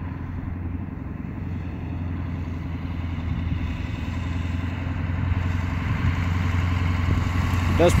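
Ford dually pickup's 7.3 Powerstroke turbo-diesel V8 running as the truck pushes snow with its plow, growing steadily louder as it approaches.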